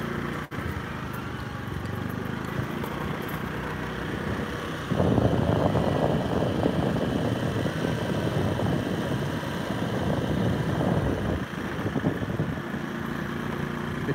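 Small motorcycle engine running at low road speed while riding. A louder rushing noise rises over it from about five seconds in until about eleven seconds.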